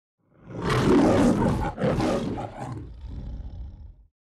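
The MGM logo lion roaring: a loud roar about half a second in, a second one just under two seconds in, then a quieter tail that stops near the end.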